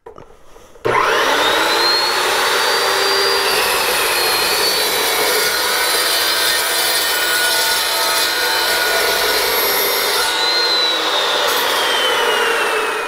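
Evolution S355MCS 14-inch metal-cutting chop saw, fitted with a carbide-tipped aluminium-cutting blade, starts about a second in and saws through a 2-inch square aluminium tube with a quarter-inch wall. The cut runs smoothly, without the chips binding in the teeth. Near the end the motor whine begins to fall.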